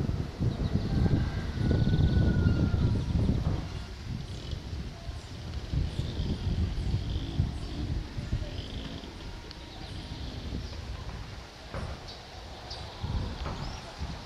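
Outdoor ambience: wind buffets the microphone with a heavy rumble for the first few seconds, then eases, leaving faint high bird chirps and a couple of light knocks near the end.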